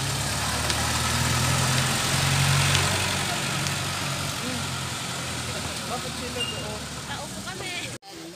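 Jeepney's diesel engine running as it moves along the road. It is loudest about two seconds in and fades as the vehicle moves off, with voices coming up near the end.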